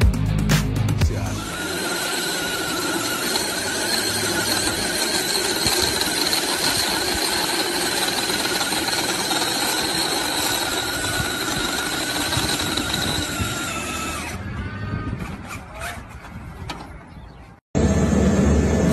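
Music for the first second and a half, then a remote-control monster truck's electric motor whining steadily and high, with tyre squeal, as it strains to tow a full-size car on a rope; the whine fades out near the end.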